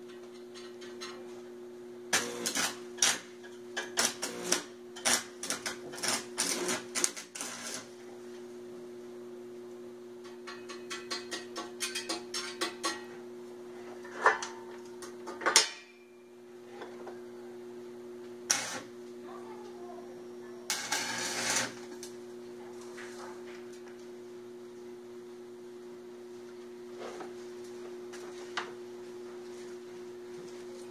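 Stick (arc) welding: tack welds struck in short bursts of arc crackle and clicks, several in the first eight seconds, more between about ten and sixteen seconds, and a denser, longer burst a little after twenty seconds. A steady electrical hum runs underneath.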